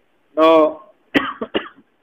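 A man's voice sounds briefly, then he coughs a few short times, clearing his throat, about a second in.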